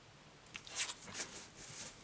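Faint rustling and a few light ticks of tarot card decks being handled, beginning about half a second in.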